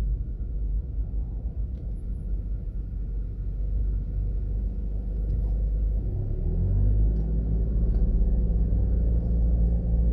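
Low, steady rumble of a car driving slowly through town traffic: engine and road noise, growing a little louder about six seconds in as the car moves off.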